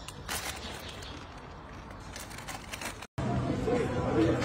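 Low outdoor background noise with a few brief rustles or clicks, then an abrupt cut near the end to the murmur of people talking at café tables.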